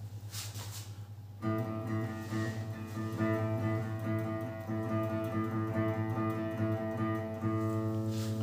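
Seven-string electric guitar picked with a plectrum, starting about a second and a half in: one low note picked over and over at an even pace, as in an open-string picking exercise. A steady low amp hum sits underneath.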